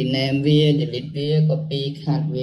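A man talking in Khmer at an even, level pitch, in a steady flow of words.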